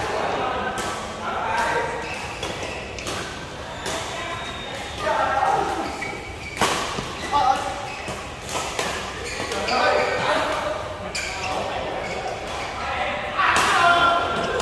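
Badminton rackets striking shuttlecocks: sharp pops scattered irregularly, the loudest a little past halfway and near the end, echoing in a large hall. Players' voices call and chatter throughout.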